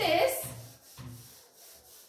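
A handheld board duster rubbing across a whiteboard in several quick back-and-forth strokes, wiping off marker writing. The strokes weaken toward the end.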